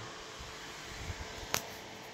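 A spring-loaded alligator clip being pulled off a wound coil, snapping shut with one sharp click about a second and a half in. Under it is a faint steady hum and hiss from the running coil setup, with a few soft handling knocks just before the click.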